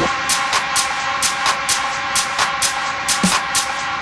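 Techno in a stripped-down passage: a held synth chord with crisp hi-hat ticks about three to four times a second and little bass.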